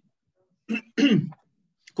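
A person clearing their throat: two short sounds, the second falling in pitch.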